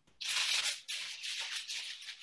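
Rustling and shuffling handling noise, a dry uneven hiss, as things are picked up and moved at a kitchen counter.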